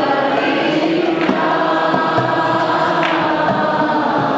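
Several voices singing a devotional bhajan together, with a few light drum strokes.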